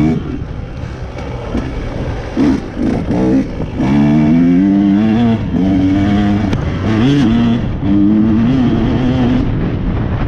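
Dirt bike engine running on a trail ride, its revs rising and falling as the throttle is opened and rolled off, with brief dips and wobbles about three and seven seconds in.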